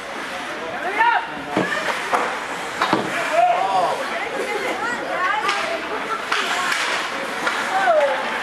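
Ice hockey game sounds in an indoor rink: sharp knocks of sticks and puck on the ice and boards, three of them in the first three seconds, over shouted calls from players and spectators.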